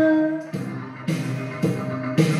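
A woman's long held sung note ends about half a second in. After that the karaoke backing track plays on its own: a rock band with a drum and cymbal hit on each beat, about two a second.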